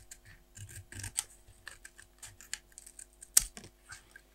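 Paper stickers and their backing being handled and peeled close up, giving a run of small crinkles and clicks, with one sharp click near the end.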